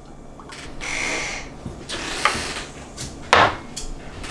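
Thick juice pouring from a pitcher into small glass jars, with a run of short glass clinks and a sharper knock about three and a half seconds in.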